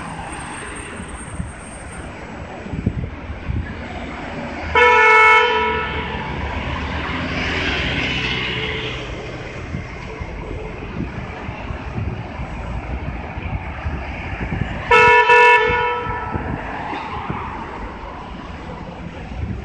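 Two loud vehicle-horn honks, each just under a second long and about ten seconds apart, over steady city traffic noise as a bus drives away through an intersection.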